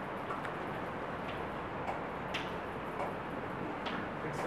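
Chalk on a blackboard while writing: a handful of short, irregular taps and scratches over steady room hiss.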